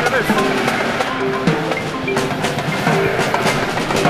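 Marimba played with mallets: a run of short, ringing wooden-bar notes at changing pitches, with drum strokes mixed in.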